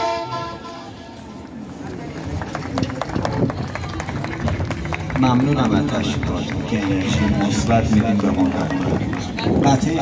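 Music from an outdoor stage ends at the start. After a short lull of scattered clicks and taps, a man's voice speaks from about five seconds in.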